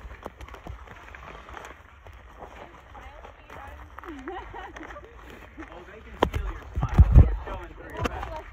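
Faint voices of people talking, then from about six seconds in, loud low rumbling and knocks on the handheld camera's microphone as it is carried along.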